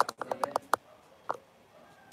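A quick run of about seven sharp clicks within the first second, then one more click about half a second later.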